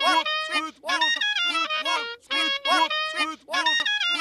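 A short snippet of cartoon audio, voice-like syllables mixed with a reedy stepped melody, looped over and over so it repeats a little over once a second.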